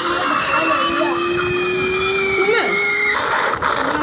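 Cartoon sound effect as a large ball rolls up: a long, slightly rising whistle-like tone with a second tone sliding slowly down above it. Both cut off abruptly about three seconds in, over a steady hiss.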